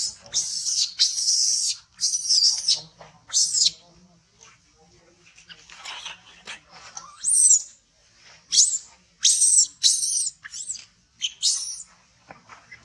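Infant long-tailed macaque crying: repeated high-pitched squealing calls, each rising and falling in pitch, in bouts with a short lull midway. The crying is that of a hungry baby wanting to nurse.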